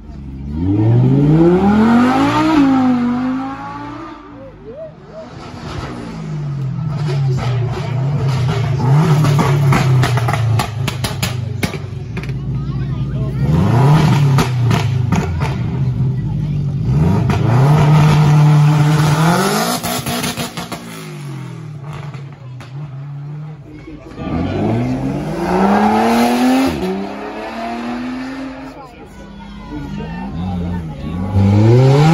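Sports car engines revving hard, their pitch climbing steeply and dropping back in repeated bursts near the start, in the middle and again near the end, between spells of a steady low engine note.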